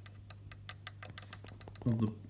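Opened-up sewing machine's rotary hook and needle mechanism turning, giving a quick, uneven run of small, sharp metallic clicks over a steady low hum.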